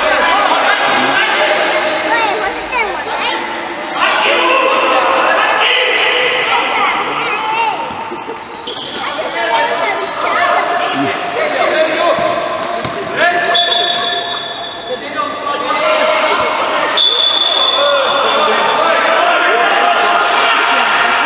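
Futsal game in an echoing sports hall: sneakers squeaking on the court, the ball being kicked and bouncing, and players shouting.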